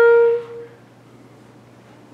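1938 Buffet-Crampon Model 13 wooden B-flat clarinet holding its final note, which stops about half a second in and rings briefly in the room. After it there is quiet room tone with a faint low hum.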